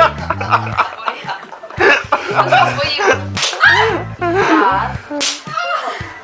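Sharp slaps, two standing out in the second half, as a person lying face down is struck in a counted series of blows. Under them run bar music with a steady bass line, voices and laughter.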